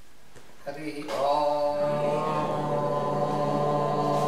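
Voices chanting together on a long, held note, starting softly a little under a second in and swelling over the next second as more voices join.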